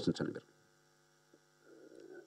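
A man's voice on a handheld microphone trails off within the first half second, followed by a faint, steady electrical hum from the microphone and sound system.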